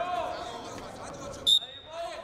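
Referee's whistle: one short, shrill blast about one and a half seconds in, the signal to restart the wrestling bout. Shouting voices come before it.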